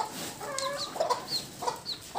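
Native chickens clucking: several short calls through the two seconds, a few with high, brief chirps.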